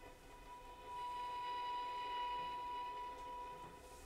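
A single held musical note with overtones, swelling in about a second in and fading out just before the end.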